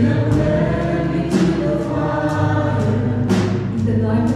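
Live church worship music: a choir singing with a band, over a steady bass, with sharp percussion hits every second or two.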